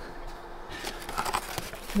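Quiet rustling and scratching of paper and pen being handled against a foam mattress, with a few faint scratchy sounds about a second in over low background hiss.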